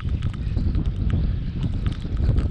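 Wind buffeting the microphone with a steady low rumble, with scattered light ticks of rain hitting the microphone.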